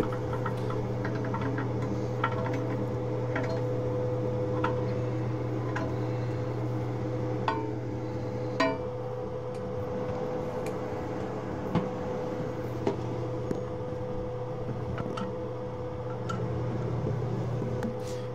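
Scattered light metal clicks and clinks from hand tools, a screwdriver and channel-lock pliers, working toilet tank bolts. They fall at irregular intervals over a steady low hum.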